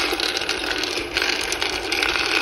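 Dry cocoa beans rattling and scraping in a roaster pan as its rotating stirring arm pushes them round. The sound is a steady, dense clatter of many small clicks. The beans are lightly roasted, at the end of a gentle 20-minute roast at 120 degrees.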